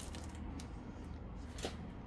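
Faint crackling and rustling of a crusty homemade loaf's crust pressed under a hand, with a couple of small clicks.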